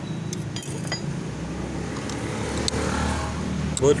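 A few light metallic clicks from a motorcycle drive chain and its adjuster being handled, over a steady low hum. The chain is very slack.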